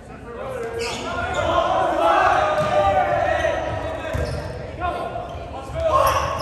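Players and spectators calling out and shouting in a gymnasium hall during a volleyball rally, with a few sharp thuds of the ball being struck.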